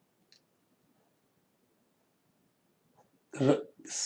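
Near silence with one faint short click just after the start, then a man's voice begins speaking near the end.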